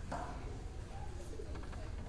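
Hushed auditorium room noise with a low steady rumble, a brief voice-like sound just after the start and a few soft clicks about one and a half seconds in.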